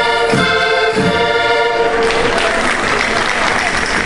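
Portuguese folk ensemble of accordions and singers ending a chula on a long held final chord, followed by audience applause from about halfway through.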